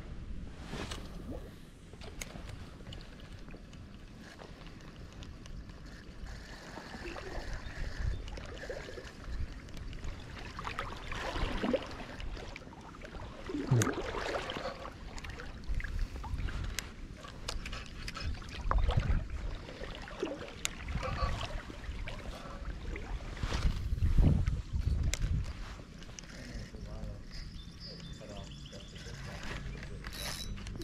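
A fish being played on a light spinning rod in a shallow stream: the spinning reel is cranked and water sloshes and splashes, over an uneven low rumble broken by scattered short clicks.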